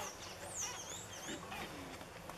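Faint high-pitched bird chirps, a few short arching calls about half a second in, over quiet outdoor background.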